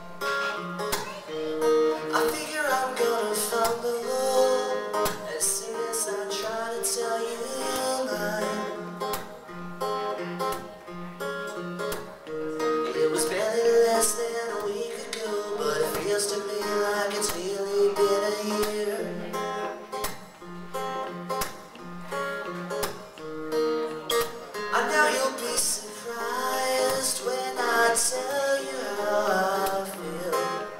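A strummed acoustic guitar accompanying a solo singer in a live song, the voice coming in and out in phrases over steady chords.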